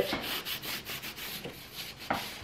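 Cloth rag rubbing hard on an old weathered wooden window frame in quick repeated strokes, scrubbing dirt off the bare wood.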